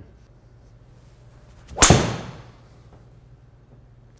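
Tour Edge EXS 220 fairway wood striking a golf ball off a hitting mat: one sharp impact about two seconds in that rings off over about half a second.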